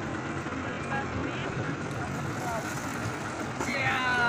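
Farm tractor engine running steadily as it drives through floodwater, with brief voices, one clearer near the end.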